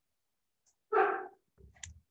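A dog barks once, a short high-pitched bark about a second in, followed by a few faint clicks.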